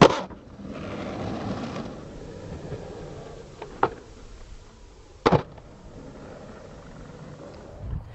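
Skateboard on a concrete skatepark: a sharp clack of the board at the start, wheels rolling on the concrete, then a tail pop about four seconds in and, a second and a half later, the loudest slap of the board landing, followed by more rolling.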